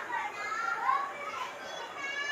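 Children's voices in the background: high-pitched calling and chatter whose pitch rises and falls.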